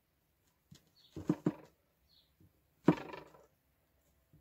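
Sharp knocks of a leatherworker's stitch gauge being pressed down onto leather lying on a wooden board, marking the spacing for stitching holes: a quick run of three knocks about a second in and a single loud knock near three seconds.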